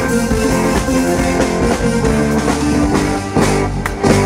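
Live rock band playing an instrumental passage with no singing: electric guitar, bass guitar and drum kit.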